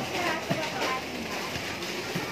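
Supermarket checkout background: faint voices over the hum of the store, with a light knock about a quarter of the way in.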